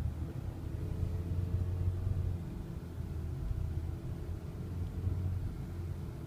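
Car running slowly in traffic, heard from inside the cabin: a steady low rumble of engine and road noise with a faint, slowly drifting engine tone.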